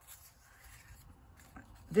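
Faint rustling of a small piece of cardstock and a sticky note being handled between the fingers.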